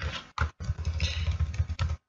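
Computer keyboard keys tapped in quick succession: a single click, then a rapid run of clacks from about half a second in.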